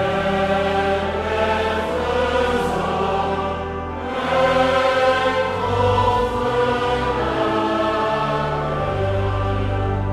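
A church congregation singing a psalm together in long held notes over organ accompaniment, with a short break between lines about four seconds in.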